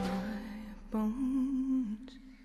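Wordless humming voice in a film score. A held note fades away, then a second, wavering note starts about a second in and cuts off just before the end.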